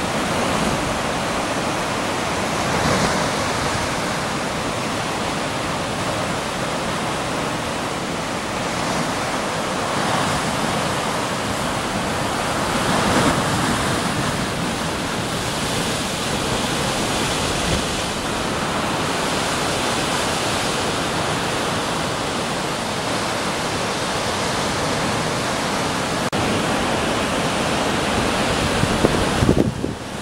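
Storm-driven sea surf crashing and foaming against a rocky shore: a continuous heavy rush of breaking water, with a few louder surges as bigger waves hit.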